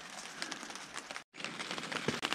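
Rain pattering on a plastic tarp overhead: a soft hiss full of small scattered ticks. The sound drops out for a moment about a second in, then carries on the same.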